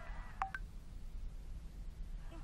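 Two short electronic beeps in quick succession near the start, over a steady low background hum.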